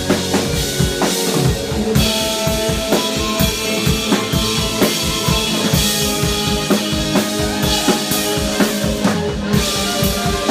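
Live rock band playing: a drum kit keeping a steady beat of kick and snare under electric guitars, with held tones filling in about two seconds in.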